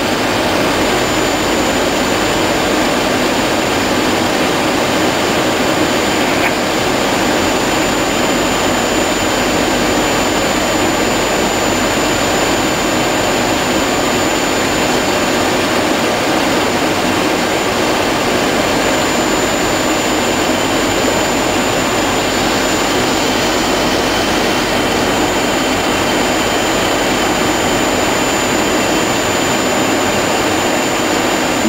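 Steady cockpit noise of a Boeing 737 on final approach: its jet engines at approach power mixed with airflow over the fuselage, with a thin high-pitched whine above it.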